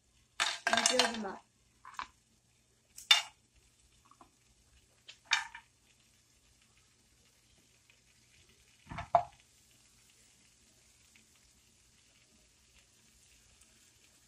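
Whole spices and pieces of ginger being set down one handful at a time into a dry nonstick frying pan: a few short knocks and taps against the pan, spaced seconds apart. A faint steady hiss runs through the later half.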